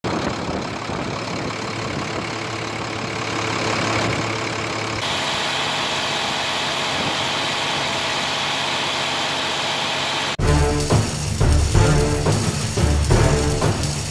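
Maxxforce 9 diesel truck engine running at low rpm. About five seconds in the sound changes abruptly to the engine at high rpm, brighter and higher-pitched. It cuts off suddenly about ten seconds in, replaced by theme music with a heavy beat.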